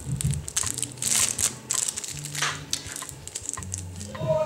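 Clear plastic brush sleeve crinkling and rustling, with irregular small clicks and taps, as makeup brushes are handled.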